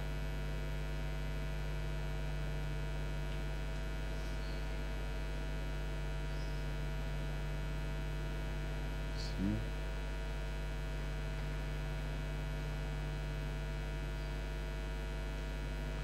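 Steady electrical mains hum in the sound system, a constant low drone with fainter overtones and no change in pitch or level. A brief faint voice-like sound comes about nine and a half seconds in.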